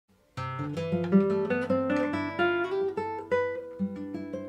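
A guitar plays a short intro phrase: a quick run of single picked notes over a held bass note, ending in a note left to ring out.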